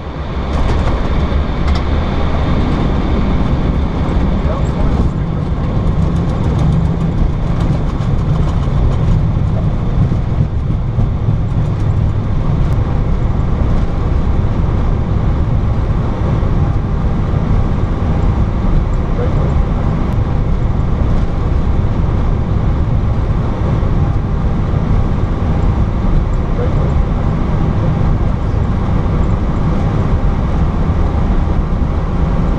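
Airbus A320 landing rollout heard inside the cockpit: a loud, steady low rumble of the wheels on the runway and the engines, rising sharply just after touchdown and running on as the airliner slows.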